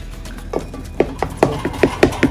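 Wooden spoon pounding and mashing green leaves in an aluminium pot, a run of knocks that quickens to about five a second.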